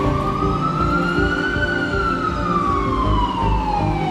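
Ambulance siren wailing: one slow glide up in pitch over the first couple of seconds, then a longer steady fall.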